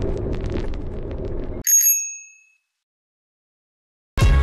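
Steady road and engine noise inside a kei van's cabin, cut off about a second and a half in by a single bright bell ding that rings out for under a second.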